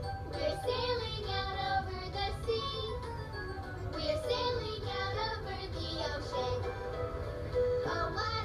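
A children's song: young voices singing a melody together over an instrumental backing.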